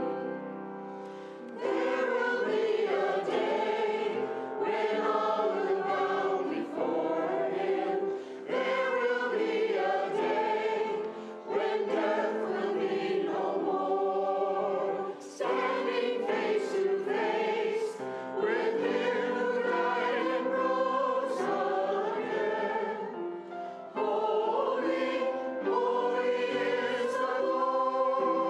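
Mixed church choir of men and women singing with piano accompaniment, in phrases separated by brief pauses. The opening is quieter and swells up about a second and a half in.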